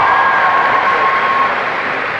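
Audience applauding and cheering in a hall. A thin, steady high tone sounds over the applause and stops about one and a half seconds in.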